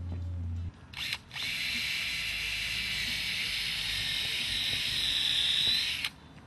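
A power tool, of the drill kind, running steadily at a high pitch for about four and a half seconds, rising slightly near the end and cutting off suddenly; a short knock comes just before it starts.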